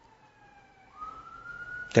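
An emergency-vehicle siren wailing quietly in the background. Its pitch slides slowly downward, then about halfway through it jumps up and climbs again to a held high tone.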